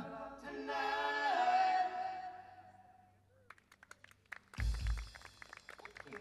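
A live band's song ending on a held sung note that fades out about halfway through, followed by scattered clapping and a single low thump.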